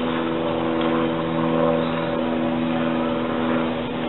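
An engine running steadily at constant speed, a low even drone with a faint hiss over it.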